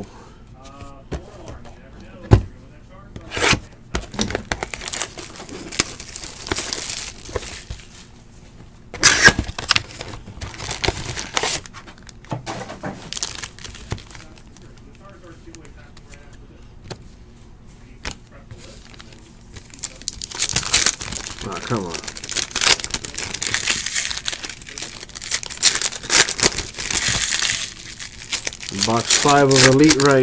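Foil trading-card pack wrappers crinkling and tearing as packs are ripped open by hand, dense and continuous in the last third. Earlier there are a few sharp knocks from cards and the box being handled.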